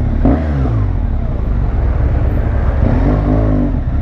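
Motorcycle engine running at low speed while the bike is ridden slowly and manoeuvred to park, its note rising and falling briefly twice with small throttle changes.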